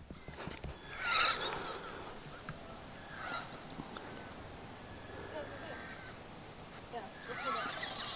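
LaTrax Teton 1/18 RC truck's small electric motor whining in short throttle bursts, its pitch gliding up and down as the truck crawls slowly over a dirt mound. The loudest burst comes about a second in.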